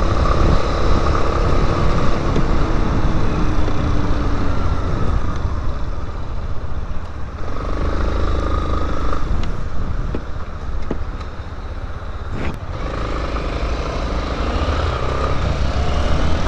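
Yamaha Lander 250's single-cylinder four-stroke engine running on the move, heard from a helmet-mounted camera with a dense rumble of wind and road noise. The engine pitch shifts as the throttle changes, quietens for a couple of seconds past the middle, then picks up again, with one sharp knock about twelve seconds in.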